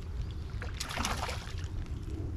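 Wind rumbling on the microphone, with a short splashing burst about a second in as a hooked largemouth bass is drawn out of the water at the bank.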